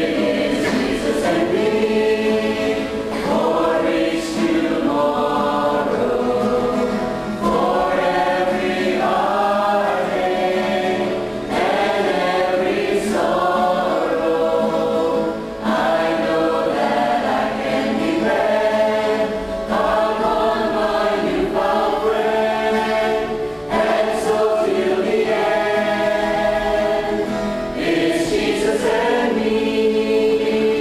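Mixed choir of men and women singing together in parts, in sustained phrases of about four seconds with brief pauses for breath between them.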